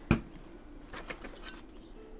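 Tabletop handling of a plastic squeeze bottle of matte medium: one sharp knock just after the start, then a few light clicks and taps as the bottle is moved and set down on the desk.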